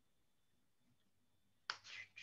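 Near silence, broken near the end by a sudden sharp click followed by a few short noisy strokes.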